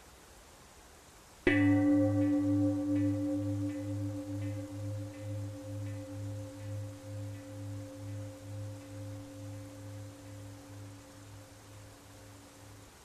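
A meditation bell of the singing-bowl kind, struck once about a second and a half in. It rings on with a low tone that wavers in a steady pulse as it slowly fades, a cue to return to neutral position.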